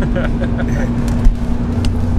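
Chevrolet Camaro Z28's 5.7-litre V8 running steadily at cruise, heard from inside the cabin with a low road rumble. A single sharp thump comes about a second and a quarter in.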